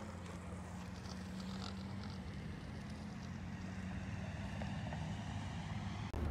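Faint outdoor background: a steady low hum with light wind on the microphone.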